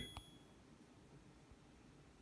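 Near silence: a motorised kitchen range hood running faintly on low speed, with a brief high beep and a single click about a fifth of a second in.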